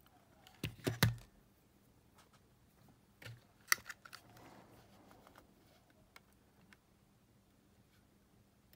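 Small clicks and taps of metal tweezers and fingers against the plastic and metal cassette mechanism of an opened Sony Walkman EX610 as its old, snapped drive belt is picked out. A cluster of clicks comes about a second in, and a sharp tick just before four seconds, with fainter ticks scattered after.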